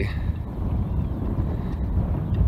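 Wind buffeting the microphone: an uneven low rumble with nothing else standing out.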